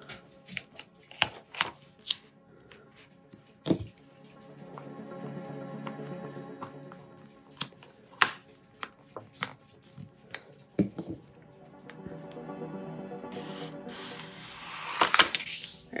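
Background music over sharp crackles and clicks of transfer tape and paper vinyl backing being handled, with a longer, louder crackling peel near the end as the transfer tape comes off its backing.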